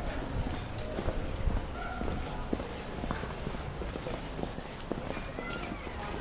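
Footsteps clicking irregularly on stone paving, with passers-by talking faintly over a low street rumble.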